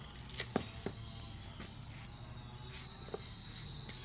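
Tomato being cut on the curved blade of a boti, a few short soft clicks about half a second in and once near the end. A steady high insect drone runs underneath.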